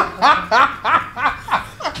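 Two men laughing hard: a rapid run of short laughs, each falling in pitch, about four a second.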